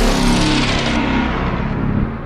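Cinematic logo-intro sound effect: the tail of a deep impact hit, a low boom and rumble slowly dying away as its brightness fades.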